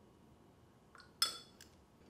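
A single light clink with a brief high ring about a second in, as a paintbrush knocks against a hard container or palette, with a faint tick just before it.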